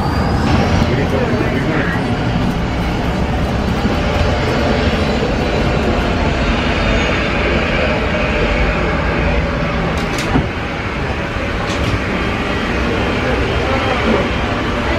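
Steady loud rumble of aircraft and airport ground machinery, with a high whine, heard inside an enclosed jet bridge during boarding, with faint passenger voices. A couple of sharp knocks come in the last few seconds.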